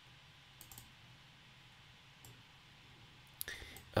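A few faint computer mouse clicks over quiet room hiss: a small cluster about half a second in and a single click about two seconds in, made while drawing a trendline on a charting screen.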